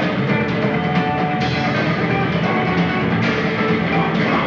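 Live rock band playing an instrumental passage: electric bass with drums and guitar, loud and continuous.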